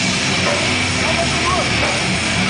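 Live hardcore/metal band playing at full volume, heard from the crowd as a dense, steady roar of distorted guitars and drums with shouted vocals.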